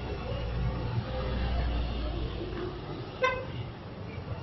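Street traffic: a vehicle rumbles past, then a single short horn toot sounds a little after three seconds in.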